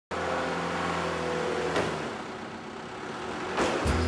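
A motor vehicle engine running steadily, its low hum dropping away about halfway through. A short rising sweep follows near the end.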